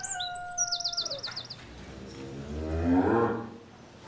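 Small birds chirping in the first second and a half, then a cow moos once, a call rising in pitch that is loudest about three seconds in.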